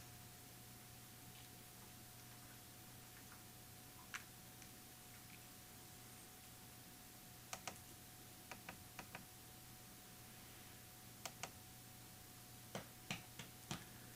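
Faint key clicks, each short and sharp: a single one about four seconds in, then pairs and small runs from about seven and a half seconds on, as keys are pressed to step down an on-screen menu. Under them runs a faint steady electrical whine and hum.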